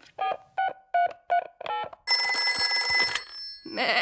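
Cartoon telephone sounds: about six short electronic beeps as the number keys of a cordless phone are pressed, then a telephone bell ringing loudly for about a second at the other end of the line.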